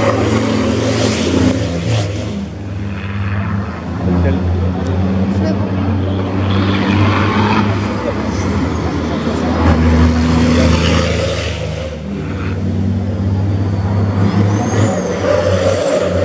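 Racing trucks' heavy diesel engines running at speed as they pass close by on the circuit, a deep engine note that swells and eases as trucks go by one after another.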